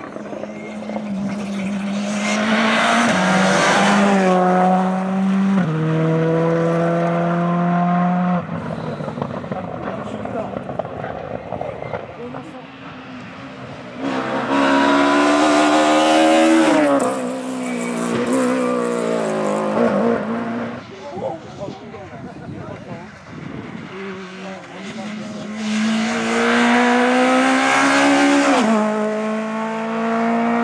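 Three rally cars, a Škoda Fabia, a BMW E36 3 Series and a Peugeot 106, pass one after another at full throttle. Each engine's pitch climbs and then drops in steps as it shifts up. The loud passes come a couple of seconds in, midway, and near the end.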